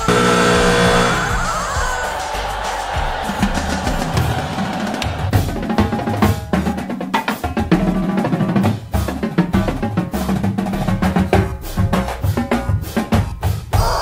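A long pitched tone falls in pitch over the first two seconds or so. Then comes fast, rhythmic drumming with sticks on a set of marching tenor drums (quints), with dense runs of strokes across the drums.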